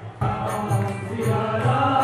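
Devotional mantra chanting sung over music, with a light, regular percussive tick through it; the sound drops out briefly right at the start before the chant resumes.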